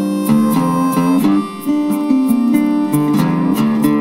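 Acoustic guitar playing an instrumental passage of picked notes, with no singing.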